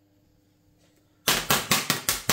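A kitchen knife stabbing through the film lid of a frozen ready-meal tray: a quick run of sharp pops, about five a second, starting a little over a second in after a near-quiet pause.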